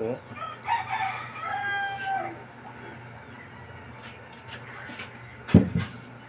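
A rooster crowing once, a long call held at an even pitch for about a second and a half. Later come faint, short, high chirps and, near the end, a single sharp thump, the loudest sound.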